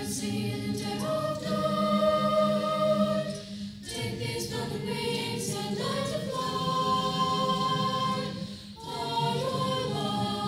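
A school choir singing long held chords in phrases, with brief breaks about four seconds in and again near the end.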